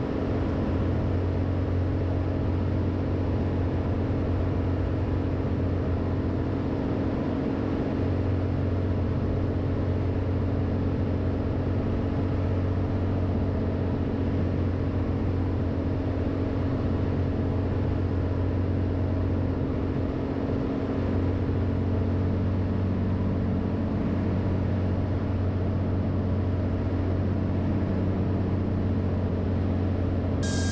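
Cirrus SR22's Continental IO-550 six-cylinder engine and propeller droning steadily on final approach, the pitch holding even.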